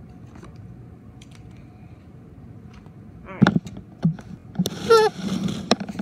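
Clicks and knocks of a plastic CD case being handled, beginning about three seconds in after a quiet stretch.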